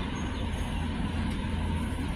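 Steady low rumble of a car heard from inside its cabin, its engine running with no change in pitch.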